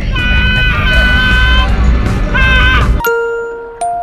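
Wind rushing loudly over the on-ride microphone of the Twin Spin roller coaster, with high, held cries from riders over it. About three seconds in the ride sound cuts off abruptly, and a few struck chime-like notes ring out.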